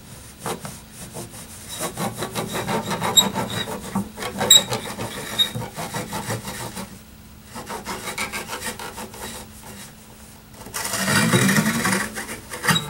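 Cotton rag damp with rubbing alcohol rubbed rapidly back and forth along the steel strings of an acoustic guitar, a run of quick scratchy strokes with two brief pauses and a louder stretch near the end. It is the sound of wiping grime off the strings.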